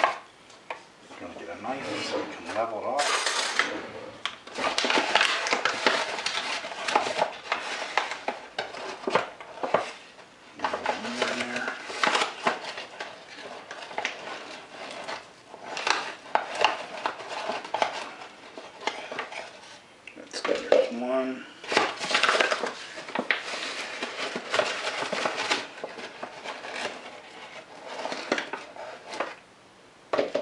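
Whole wheat flour being scooped by hand from a paper flour bag with a measuring cup: the paper bag rustling and utensils scraping and clinking against plastic cups and a bowl, in an irregular run of small knocks and scrapes.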